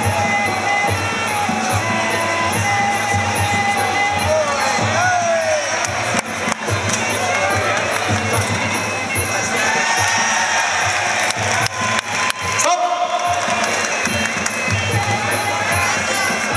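Traditional Muay Thai fight music (sarama): a wavering, pitch-bending pi oboe melody over steady drum beats and a regular high cymbal tick, played loud through the arena.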